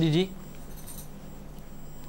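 A single short spoken word, then low studio room tone with a steady low hum. A faint, brief high-pitched jingle comes just under a second in.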